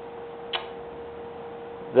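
A steady, even hum at one pitch under low background noise, with a single short click about half a second in.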